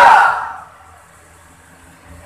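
A man's loud, drawn-out exclamation through a public-address loudspeaker, cutting off in the first half second and trailing away with echo, followed by a pause with only a low background hum.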